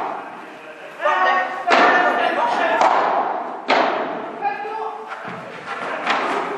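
Padel rally: several sharp hits of the ball off rackets and the court's glass walls, the strongest about two and four seconds in, each ringing on in the large hall.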